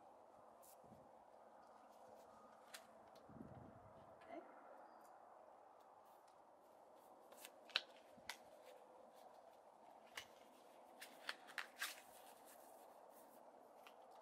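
Near silence broken by a few faint, sharp clicks of playing cards being handled and flicked, most of them in the second half.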